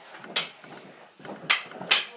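Three short, sharp clicks or knocks of small objects being handled, one early and two close together near the end.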